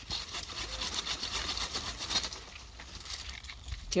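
Stihl PR 33 Megacut hand pruning saw cutting through a tree branch in quick, repeated back-and-forth strokes. Its teeth are set to cut mainly on the pull stroke. The rasping gets a little quieter after about two seconds.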